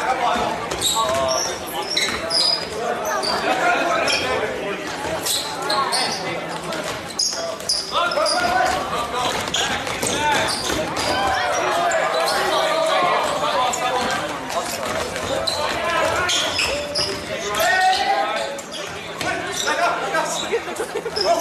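Basketball game play in a gym: a ball bouncing on the hardwood court, short high sneaker squeaks, and players' and spectators' voices, all echoing in the hall.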